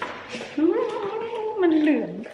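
A single long, drawn-out vocal call with a clear pitch. It rises at the start, holds with a slight waver, then slides down at the end.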